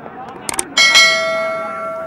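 Subscribe-button overlay sound effect: two quick clicks, then a bell notification ding that rings on and slowly fades, over faint crowd noise.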